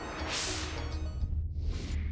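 Two whoosh sound effects for an animated title-card transition, the first about a quarter second in and a shorter one near the end, over a deep bass rumble.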